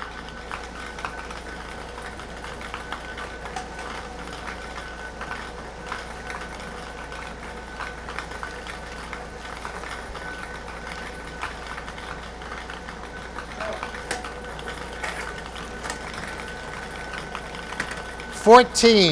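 Air-blown lottery ball machine running steadily, its blower humming while the light numbered balls tumble and click against the clear plastic dome.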